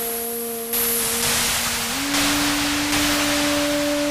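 Experimental electronic noise music: a steady low synthesized drone with a higher tone above it, the low tone stepping up in pitch about two seconds in, under a loud hiss of noise that changes abruptly several times.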